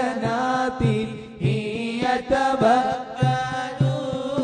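Moulid recitation: Arabic devotional chanting in praise of the Prophet, sung in long held lines whose pitch winds up and down, over a regular low beat about twice a second.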